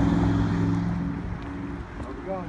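A road vehicle's engine, a steady low hum that fades away over the two seconds as it moves off.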